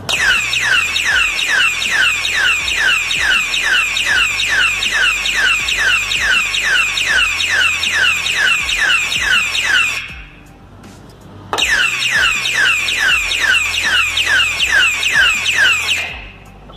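Battery siren alarm padlock sounding its siren, a loud, rapid falling wail repeating about three times a second. Its motion sensor has been set off by someone trying to force the lock. The siren cuts off about ten seconds in and starts again a second and a half later.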